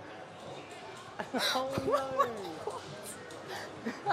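Steady background hum of a bowling alley, then about a second in, voices exclaiming, with a single sharp thud in the middle of them.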